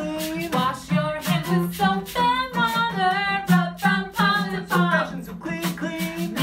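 Women singing a children's hand-washing song, accompanied by a strummed acoustic guitar.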